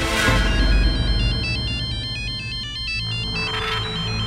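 Mobile phone ringtone: a high electronic melody of short stepping notes starting about a second in, over low background music.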